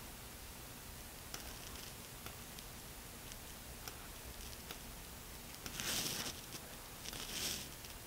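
Quiet room tone with a steady faint hiss, broken by a few soft clicks of a computer mouse. Two short hissing rustles come near the end.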